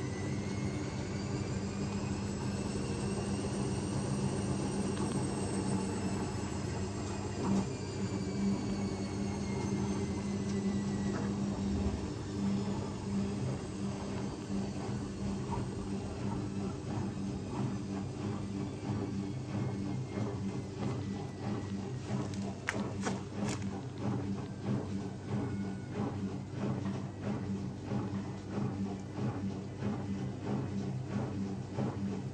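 Zanussi ZWT71401WA front-loading washing machine spinning a load of two soaked towels. The motor whine rises for about four seconds, then slowly falls, over a steady low drum hum, with a few sharp clicks about two-thirds of the way through. The load keeps going out of balance.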